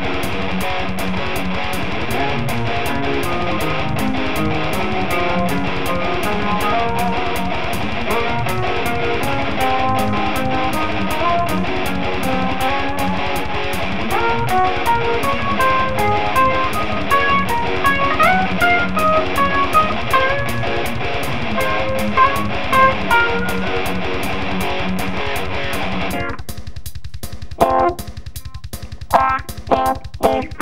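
Neoclassical metal instrumental: guitar playing fast melodic lead lines over a drum kit with a steady bass drum pulse. About 26 seconds in, the full band drops out, leaving the drums and short, separated stabs.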